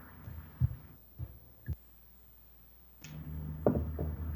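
Three soft, low thumps about half a second apart over a video-call audio line. About three seconds in, a steady low electrical hum starts, as a participant's microphone opens, and one more thump follows.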